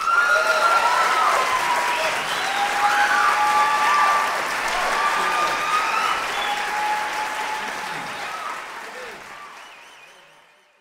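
Audience applauding and cheering at the end of a live fiddle tune, fading away over the last few seconds.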